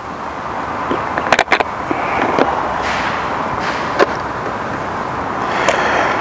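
A few short clicks and knocks as the canopy is unclipped and lifted off a fixed-wing drone's fuselage, over a steady outdoor background hiss.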